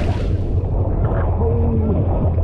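Ocean surf churning around a handheld GoPro, a heavy low rumble of water against the camera housing. From about a quarter second in it turns muffled, the high end gone, as water washes over the camera.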